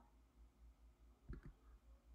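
Near silence with faint room tone, broken by one brief faint click about a second and a half in.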